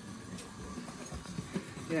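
Hornby Duchess-class OO gauge model steam locomotive running along the track, its motor and wheels giving a low, irregular rattle with a few light clicks. The running carries a slight knocking, which the owner puts down to the model still needing running in.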